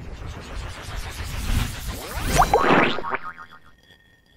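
Cartoon sound effects for an animated logo intro: a springy boing with rising glides over a rumbling noise, loudest about two and a half seconds in, then fading away.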